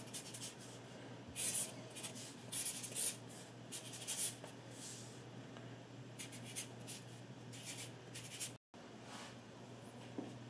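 Sharpie permanent marker writing on a painted wall: a series of short, faint, scratchy pen strokes as a signature and date are written. A low steady hum runs beneath.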